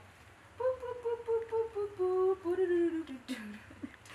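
A woman humming a short wordless jingle in a few long notes that step slowly down in pitch.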